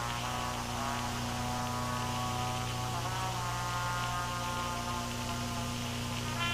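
Eerie analog-horror soundtrack: a steady low electrical hum under hiss, with layered sustained tones held above it that slide down in pitch a few times.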